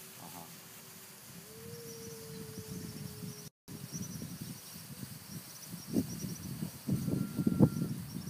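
Insects chirping in quick, high pulses over a thin steady drone that fades after about four seconds, with louder rustling swishes from about six seconds in.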